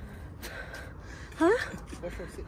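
A person out of breath after a long, steep climb, breathing hard in gasps, then a short, rising "huh?" about one and a half seconds in.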